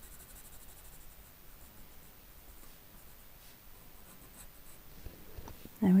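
Pencil shading on drawing paper: a faint, steady scratching of the pencil lead as tone is laid in with short strokes.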